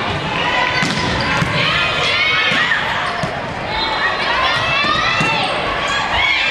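Indoor volleyball gym sound: sneakers squeaking on a hardwood court in many short, high chirps, with a few sharp thuds of the ball and a steady hubbub of voices echoing in the hall.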